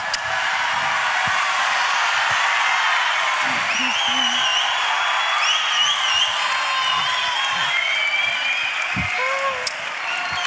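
A large audience applauding and cheering steadily, with high shouts and whoops rising above the clapping from about three and a half seconds in.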